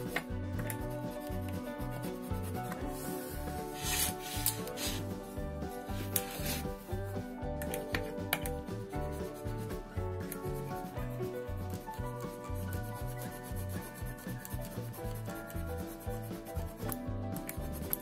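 Pencil rubbing and scratching over a paper printout laid on a wooden board, pressed hard along the lines to trace the design through onto the wood, in irregular strokes. Background music with a steady low beat plays under it.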